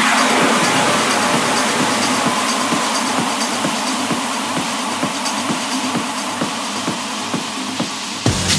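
Techno in a DJ mix during a breakdown: the kick and bass are gone, leaving a wash of noise, a falling synth sweep near the start and a quick ticking rhythm, slowly getting quieter.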